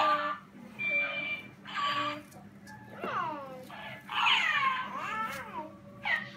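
A talking plush cat toy and a toddler's voice: short steady-pitched electronic sounds about a second apart, then a run of falling cries through the second half.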